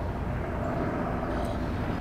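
Steady low rumble of distant engine noise in the outdoor background, with no sharp events.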